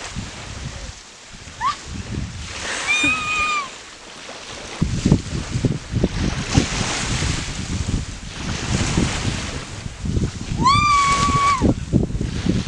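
A person's high-pitched shouts while riding a rope swing: a short one about three seconds in and a long, held one near the end that rises, holds and falls. From about five seconds in, wind rushes and rumbles on the microphone.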